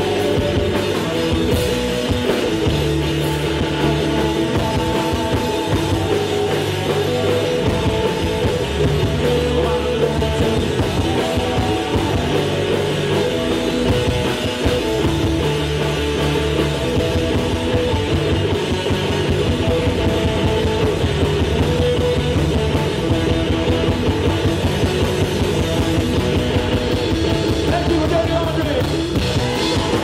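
Live rock band playing: electric guitar, electric bass and drum kit, with a steady repeating groove.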